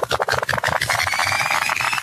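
Video-editing rewind sound effect: a fast stutter of rapid clicks under a pitch that rises steadily throughout, like audio being wound backwards at speed, cutting off suddenly at the end.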